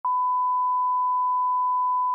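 Steady 1 kHz test tone of the kind that accompanies colour bars, a single unwavering beep that starts with a brief click.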